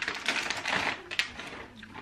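Plastic and paper snack wrappers crinkling and rustling as they are handled and gathered up, with a few sharp clicks mixed in; it dies down near the end.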